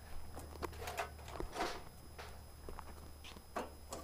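Faint, scattered light knocks and clatter of hickory wood chunks being set by hand onto the burning charcoal in a kettle grill.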